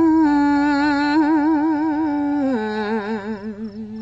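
A woman's voice chanting Khmer smot, the Buddhist sung poetry, with no words here: she holds one long vowel with a wavering vibrato. About two and a half seconds in, the note steps down in pitch and then fades.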